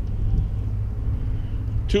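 Steady low rumble of outdoor background noise on a handheld camera's microphone. Speech begins right at the end.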